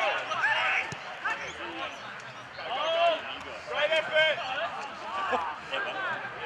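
Men's voices calling out across an open football field during play, in short loud calls, with a single sharp thump about a second in.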